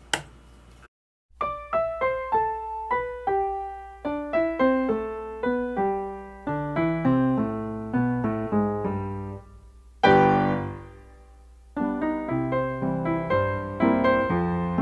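Background piano music: a steady run of single notes over lower chords, beginning about a second in after a brief click and a short silence.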